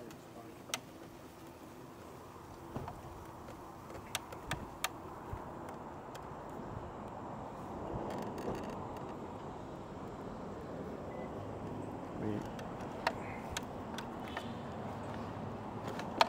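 Quiet, steady running noise of a WHILL Ri mobility scooter's electric drive and tyres, with scattered sharp clicks.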